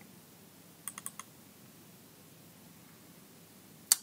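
A quick cluster of about four light clicks from a computer's input devices as a code snippet is picked from a menu, about a second in, over faint room tone.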